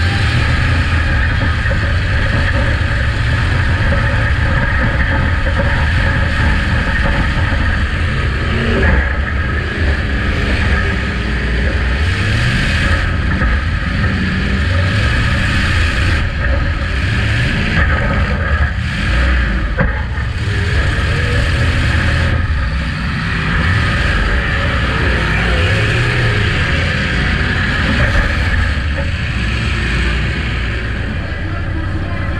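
Demolition derby car's engine running hard and revving up and down, heard from inside the gutted cabin. Several sharp bangs and scrapes cut in partway through as the car collides with other cars.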